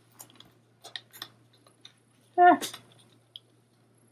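Paper sticker being peeled from its backing and handled, a few light crinkles and clicks of paper. About two and a half seconds in comes a short voiced sound falling in pitch, the loudest thing.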